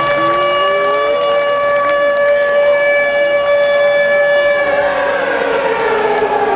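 Air-raid siren wailing on one steady pitch, then beginning to fall about four and a half seconds in. The crowd shouts and cheers beneath it.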